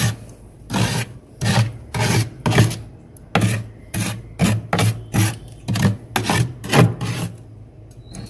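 Metal spoon scraping through flaky freezer frost in a series of about a dozen short strokes, roughly two a second, stopping shortly before the end.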